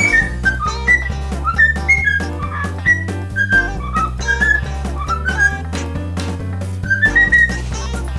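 A cockatiel whistling a tune in a run of short, clear notes, several of them rising, over background music with a steady beat.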